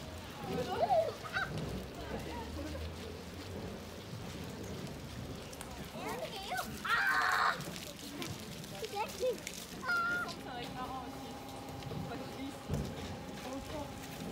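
Outdoor ambience of scattered, indistinct voices of people nearby, with a brief louder call about seven seconds in.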